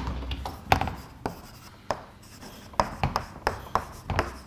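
Chalk writing on a blackboard: a series of irregular sharp taps and short scratchy strokes as an equation is written out.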